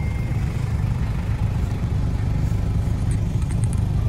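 A vehicle engine idling, a steady low rumble with no change in pace.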